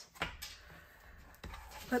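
Light handling of a cardboard folio on a tabletop: a soft knock shortly after the start and a smaller one about a second and a half in, with faint rustle between.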